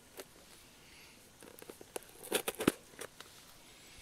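Hands handling objects: scattered light clicks and rustles, with a cluster of louder sharp clicks a little past two seconds in.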